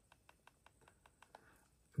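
A quick run of about ten faint clicks in the first second and a half: a Flipper Zero's directional-pad buttons pressed over and over with a thumb, stepping through a list of Wi-Fi scan results.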